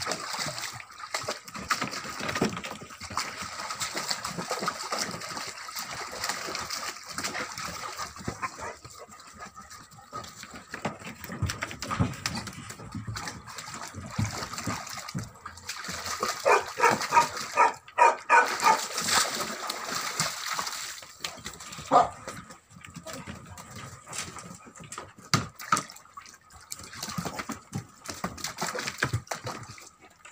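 Tibetan mastiff puppies splashing and pawing at water in a plastic paddling tub, with irregular sloshing and scrabbling throughout. About halfway through, a puppy lets out a quick run of high-pitched cries.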